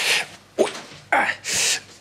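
A man's pained sounds from an aching back: a short 'oh' and several sharp breathy hisses through the teeth as he straightens up.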